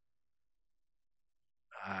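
Near silence, then near the end a man's voice says "uh".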